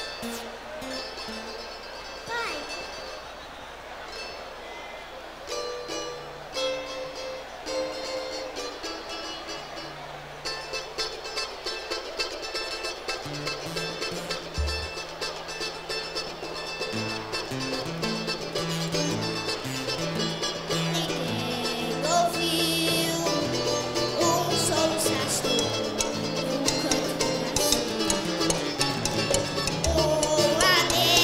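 Live samba band: a cavaquinho plays a plucked introduction on its own, then low plucked notes and more instruments join from about halfway, and the music grows steadily louder toward the end.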